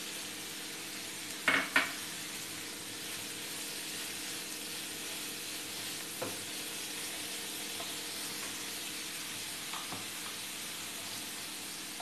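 Onion-tomato masala sizzling steadily in a frying pan as spring onions are stirred in with a spatula. There are two sharp knocks about a second and a half in and a few light taps later.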